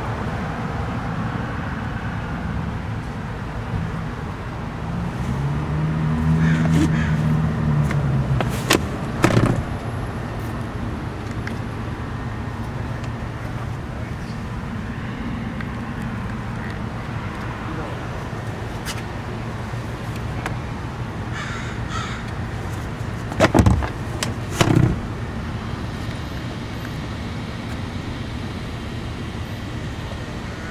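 Steady background noise. A low hum swells and fades between about five and nine seconds in, and there are two pairs of sharp knocks, near nine and near twenty-four seconds in.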